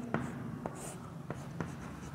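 Chalk writing on a blackboard: a series of light taps and scratches as letters are drawn.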